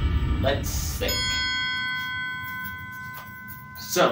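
A single bright bell-like chime, an added sound effect, rings out about a second in and fades away over about two seconds.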